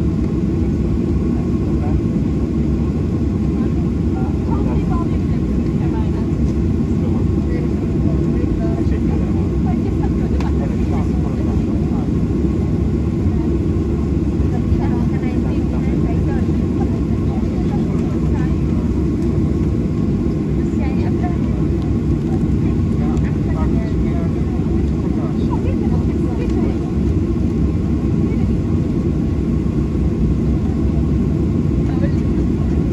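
Boeing 737-800 cabin noise while taxiing: a steady low rumble and hum from its CFM56-7B jet engines at low power, heard from inside the cabin, with faint passenger voices underneath.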